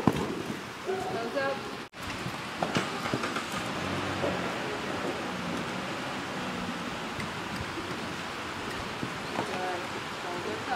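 A steady, even hiss, with brief faint voices about a second in and again near the end, and a momentary dropout in the sound just before two seconds in.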